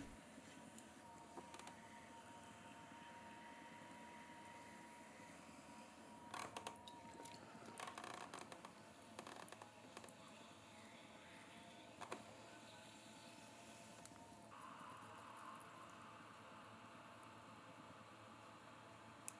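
Near silence: a potter's wheel running faintly with a thin steady whine, and a few soft wet scrapes and squelches from hands working wet clay, most of them between about six and eight seconds in.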